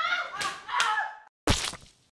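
A voice trails off, then a single heavy thud about one and a half seconds in that dies away quickly.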